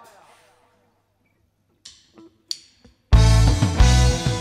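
A quiet gap, then four short count-in clicks about a third of a second apart, and a live band comes in loudly on the next beat about three seconds in: drum kit, bass and electric guitar starting a song together.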